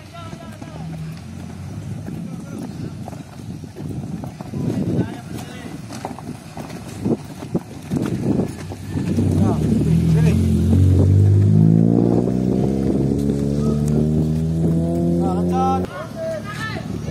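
A motor vehicle engine grows loud about halfway through and runs with its pitch slowly rising, then cuts off abruptly near the end. Before it, indistinct voices and uneven noise.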